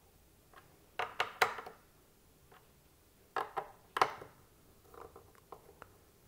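Torque-limiting Torx screwdriver clicking as it reaches its set torque on a Threadripper Pro sWRX8 socket screw. Sharp clicks come in three short runs: about a second in, at about three and a half seconds, and fainter ones near the end.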